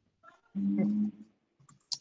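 A short, held vocal sound from a person on a video call, one steady syllable lasting under a second, followed near the end by a single sharp click.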